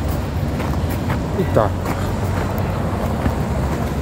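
Steady low rumble of outdoor city background noise. A man says a couple of words briefly about a second and a half in.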